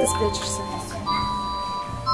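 Steady electronic chime tones that switch pitch about once a second, like a doorbell, over indoor background voices.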